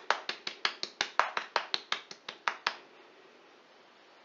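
A paprika shaker being shaken over a bowl makes quick, even clicks at about six a second. It stops suddenly a little under three seconds in.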